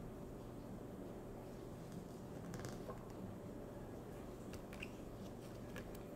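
Faint rustling and a few light clicks of paper flash cards being handled and sorted, mostly in the second half, over a steady low hum.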